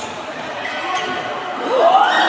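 Spectators' voices echoing around a large sports hall during a futsal game, with thuds of the ball on the court. Near the end a voice rises into a shout.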